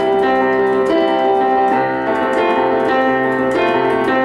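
Casio Privia digital piano playing a rock piano part at full tempo: chords held and changing about every half second over a steady left-hand bass.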